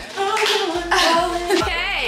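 A song playing, with a singing voice over a deep bass and a clapping drum beat.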